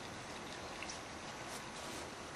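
Quiet steady background hiss with a couple of faint ticks; no distinct sound stands out.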